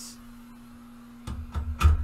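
A few sharp knocks and thumps from handling something, starting past the middle, with the loudest one near the end, over a faint steady low hum.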